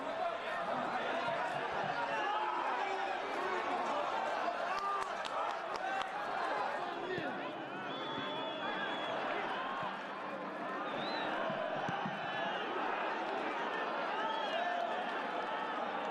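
Footballers shouting and calling to each other on the pitch, many voices overlapping, heard clearly because the stands are empty. A short, high referee's whistle blast sounds about halfway through.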